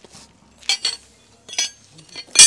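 Worn steel cultivator sweeps clinking against one another as they are picked out of a pile: a few sharp metallic clinks, two close together just past half a second in and another about a second later.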